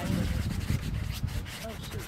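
Close rubbing and scuffing of a cloth sleeve and arm moving right beside the microphone, with a few light clicks about a second in.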